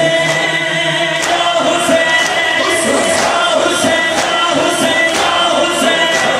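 A noha, the Shia lament, sung by a male reciter over a PA with a crowd of mourners chanting along. Sharp slaps of hands beating chests (matam) come at a steady beat of roughly one a second.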